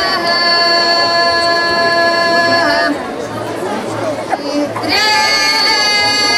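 Women's folk choir singing unaccompanied in Pomak polyphonic style: several voices hold a long, steady chord that breaks off about three seconds in. After a short break with murmuring voices, a new held note begins about five seconds in.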